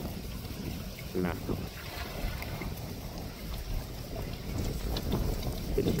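Wind buffeting the microphone as a low, uneven rumble, with one short spoken word about a second in.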